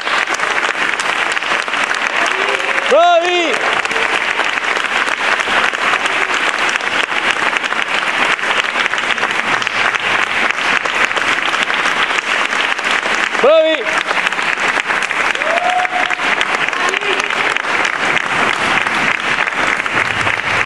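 Audience applauding steadily, with loud individual shouts of approval about three seconds in and again about two-thirds of the way through.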